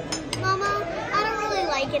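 A young child's high-pitched voice talking over the hum of chatter in a busy dining room.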